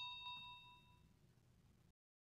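Notification-bell "ding" sound effect, a bright metallic chime ringing out and fading away over about a second.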